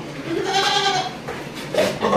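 A goat bleats once: a wavering call lasting under a second, starting about half a second in.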